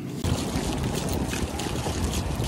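Wind rumbling on a phone microphone with water moving in an outdoor swimming pool, a steady noisy wash that starts abruptly just after the beginning.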